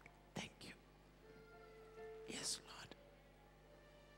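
Quiet whispered prayer: a few short, breathy whispers picked up by the microphone, with a faint held musical note in the middle.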